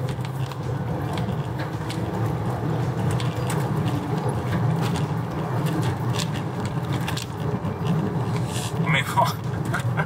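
Inside the cabin of a Citroën C6 with a 2.7-litre V6 diesel under acceleration: a steady low rumble of engine and road noise that swells slightly midway. A short laugh comes near the end.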